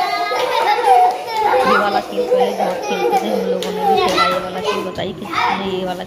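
Young children's voices, talking, calling out and laughing together while playing a group game.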